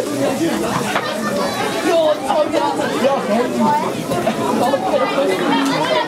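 Indistinct chatter of several spectators' voices talking over one another at a steady level, with no single voice standing out.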